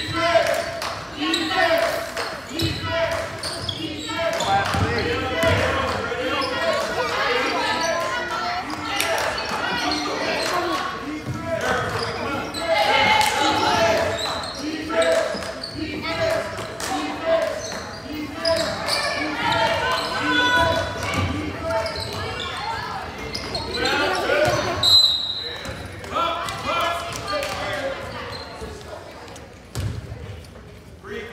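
Gym sounds of a basketball game: the ball dribbling and bouncing on the court amid overlapping spectator voices, echoing in a large hall. A short high whistle sounds about 25 seconds in, after which the noise drops.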